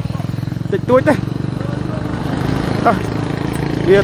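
A motorcycle engine running steadily at idle with a rapid even pulse, growing slightly louder toward the end, under brief talk.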